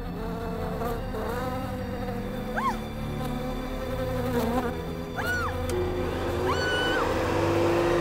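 A swarm of bees buzzing in a dense, steady drone. Short high-pitched rising-and-falling cries cut through it about two and a half seconds in, around five seconds in, and as a longer held one near the end.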